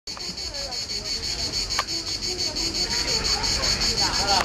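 A high-pitched chorus of insects, steady and rapidly pulsing.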